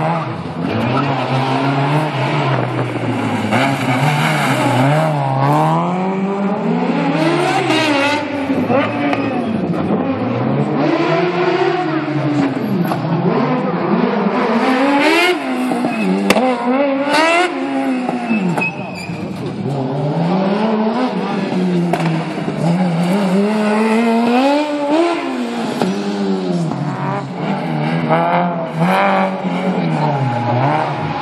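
Small race car's engine revving up and dropping back again and again as it accelerates and brakes through a tight course of turns.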